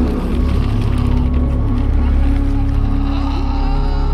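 Dark cinematic film soundtrack: a heavy, steady low rumble with sustained low music tones held above it.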